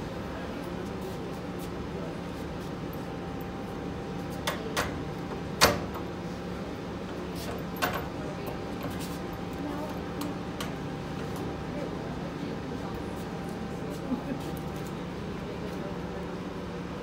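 Steady low hum of laundromat machines, with a handful of sharp knocks in the middle and one more near the end as laundry is handled in the steel drum of a Dexter commercial front-load machine.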